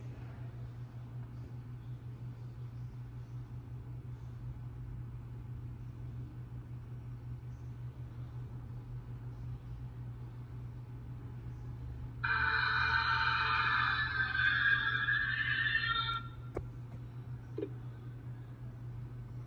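A loud, sustained electronic tone of several steady high pitches, lasting about four seconds from around twelve seconds in and cutting off abruptly. It is a sound effect in a cartoon's soundtrack, heard through a laptop speaker over a steady low hum.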